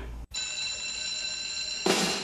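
A school bell ringing with a steady, even ring. It starts about a quarter second in, right after a brief drop in the sound, and stops just before the end.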